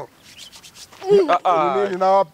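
A quiet first second with faint rustling, then about a second in a person's voice breaks in with a loud, drawn-out exclamation that glides in pitch rather than forming clear words.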